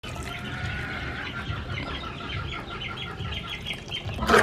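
Water poured from a plastic bottle into a hollow in dry cement mix: a steady splashing stream, with the bottle glugging in a rapid, regular run of gurgles.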